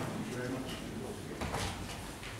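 Low, indistinct speech in a meeting room, with a short bump or rustle of handling about one and a half seconds in.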